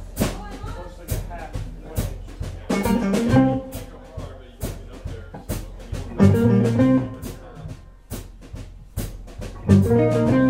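Live blues band playing: overdriven electric guitars (Gibson Les Pauls) over bass and a drum kit. The drums keep a steady beat of about two hits a second, and loud full-band chords land roughly every three seconds.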